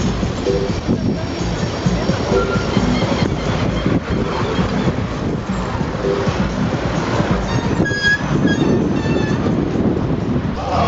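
Steady rumbling road and traffic noise from riding among a mass of cyclists, with music from portable speakers underneath and a few short high ringing tones about eight seconds in.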